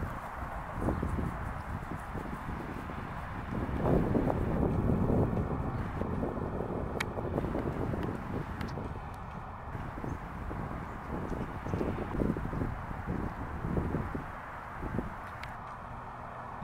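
Wind buffeting the microphone with an uneven low rumble, with a few faint scattered clicks.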